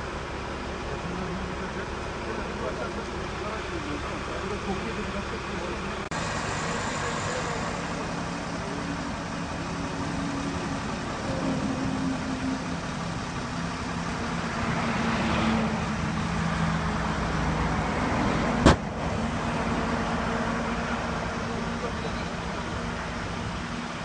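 Road traffic passing close by, swelling as a vehicle goes past about two-thirds of the way in, under low voices. A single sharp click near the end is the loudest moment.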